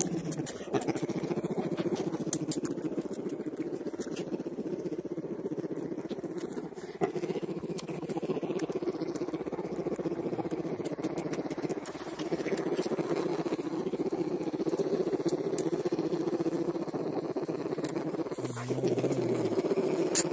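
Bear cubs humming while they suck, a steady fast-pulsing buzz with only brief breaks: the contented suckling hum of young bears.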